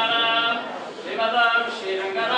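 Male voices chanting in a steady recitation, each syllable held on a level note with short breaks between phrases.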